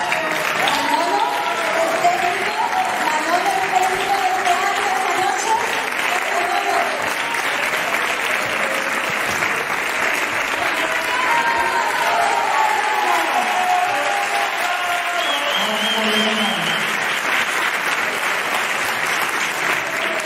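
Theatre audience applauding steadily throughout, with voices talking and calling over the clapping.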